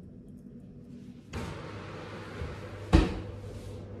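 A built-in oven's door shut with a single loud thud about three seconds in. A steady hum and hiss starts shortly before the thud and carries on after it.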